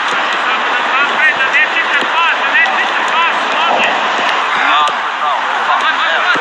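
Footballs being kicked and bouncing on a training pitch: scattered sharp thuds. Underneath runs a dense, steady chatter of short, high, chirping calls.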